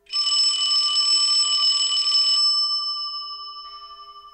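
Bright ringing sound effect on a title card: several high steady tones start suddenly with a hissing shimmer. The shimmer stops about two and a half seconds in, and the tones ring on and fade away.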